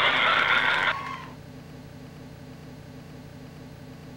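Recorded pig sound effect, harsh and noisy, cutting off about a second in. A low steady hum of room tone follows.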